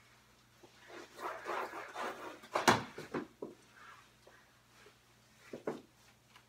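Knee hockey play with plastic mini sticks: a stretch of scuffling, then a single sharp stick hit about two and a half seconds in, followed by a few lighter taps.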